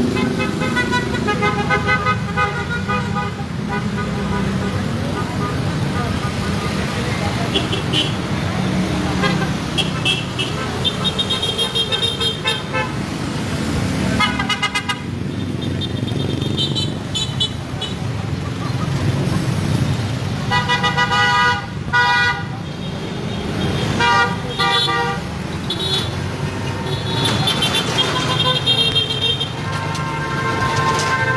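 Car horns in a motorcade honking again and again, short toots and longer blasts from several vehicles, over a steady rumble of engines and road noise.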